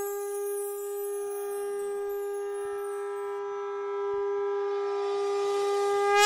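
Conch shell (shankh) blown in one long steady note that swells and bends in pitch near the end, the call that opens a Hindu aarti.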